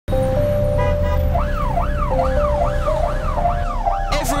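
Emergency vehicle siren wailing in a fast rising-and-falling yelp, about two sweeps a second, coming in about a second and a half in over a low steady rumble.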